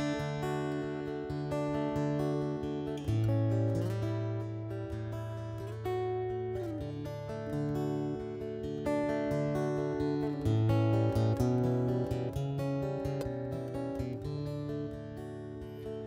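Solo steel-string acoustic guitar fingerpicked in a milonga rhythm, playing the instrumental introduction to a song. A repeating bass figure runs under plucked melody notes, played without pause.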